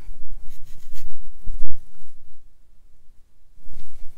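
Handling noises at a painting desk: low thumps and soft rubbing as a sheet of watercolour paper is shifted on the tabletop, with a sharp click about one and a half seconds in.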